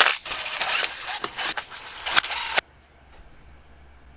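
Hand ratchet clicking rapidly as it tightens the bolts on a motorcycle's aluminium engine side case. The clicking stops suddenly about two-thirds of the way through.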